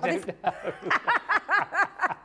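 A person laughing hard: a rapid run of short 'ha' pulses, each falling in pitch, about five a second.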